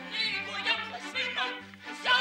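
A lively dance song: a high singing voice over instrumental accompaniment, with a bass note pulsing about three times a second.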